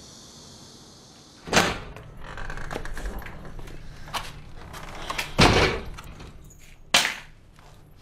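Old wooden lattice door being opened and shut: a loud knock-and-rattle about a second and a half in, a heavier thump midway, and a sharp clack about a second later, with rustling and light footsteps in between and after.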